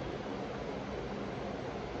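Steady, even hiss of a running room air conditioner, with no distinct knocks or clicks over it.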